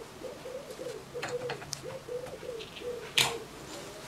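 A metal pick clicking and scraping against a clutch master cylinder's body as its rubber dust boot is levered out of the bore, with a sharp metal clink a little after three seconds. A bird's low, repeated cooing, about three notes a second, runs underneath.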